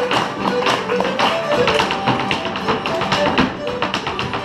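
A traditional Irish tune played live, with a dancer's shoes and broom tapping and knocking in rapid rhythm on a wooden floor: an Irish brush dance.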